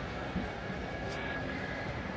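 Steady low background hum and hiss with a faint high whine, and a single light click a little over a second in.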